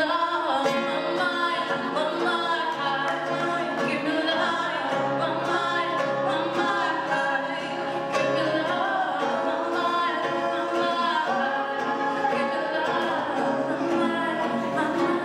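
A young woman singing a song into a handheld microphone, accompanied by acoustic guitar, both amplified through a PA.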